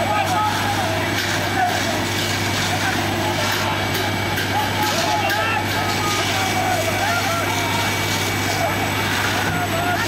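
Police water cannon running: a steady engine-and-pump drone under the rush of the water jet, with many voices shouting over it.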